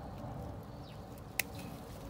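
Bush bean leaves rustling as a hand works through the plant, with one sharp click about two thirds of the way in.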